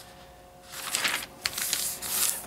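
Glossy paper of a sale flyer rustling as a page is turned and pressed flat by hand, starting a little under a second in, with a short crisp snap of paper partway through.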